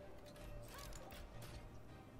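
Faint online slot game audio: soft background music with a few light clicks as symbols land during bonus spins.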